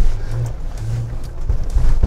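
2024 Jeep Wrangler Rubicon driving over a run of whoops: a low engine drone that rises and falls a little, over a steady rumble of tyres and suspension on the dirt bumps.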